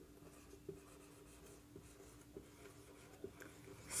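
Felt-tip marker writing on a whiteboard: faint, scattered short strokes of the pen tip on the board, over a low steady hum.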